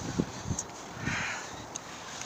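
A single short, harsh bird call about a second in, over a few low thumps from the handheld camera being moved near the start.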